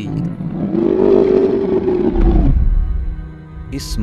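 Dinosaur roar sound effect: one long roar of about two seconds, its pitch rising a little and then falling away, over steady background music.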